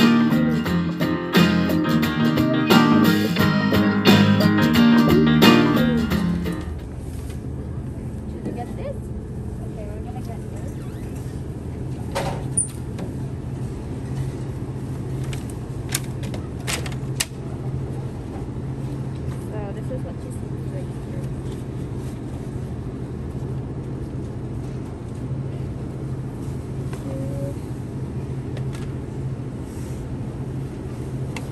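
Background music for the first six seconds or so, which then cuts off. After it comes the steady low hum of a supermarket's refrigerated cases, with a few sharp clicks and knocks from items being handled, twice around the middle.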